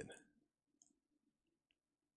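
Near silence, with two faint clicks from a computer mouse, about a second in and near the end, as the image is scrolled in.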